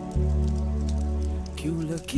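Background music of a sad Hindi song: held low tones, with a short sung phrase coming in near the end. A crackling patter runs under the music.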